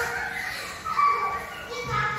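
Young girls' voices talking and calling out over one another.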